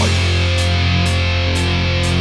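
Live death metal band: heavily distorted electric guitars and bass holding one sustained low chord.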